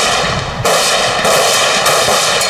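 Gunfire from a line of Kalashnikov-pattern assault rifles firing on command, the shots running together into one dense, continuous noise with a fresh sharp onset about half a second in.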